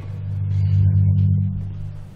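A low sustained chord played on a keyboard instrument, swelling to its loudest about a second in and then fading away; it sounds like the closing chord of the music before the speaking begins.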